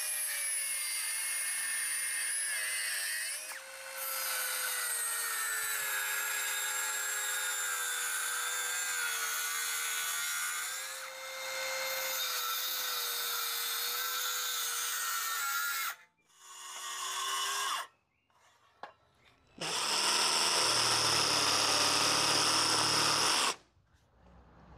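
Stanley FatMax circular saw cutting across a wooden rafter: the motor whine wavers and sags under load through several passes, with brief dips near 3.5 and 11 seconds, and stops about 16 seconds in. After a short gap, a louder stretch of cutting noise follows for about four seconds near the end.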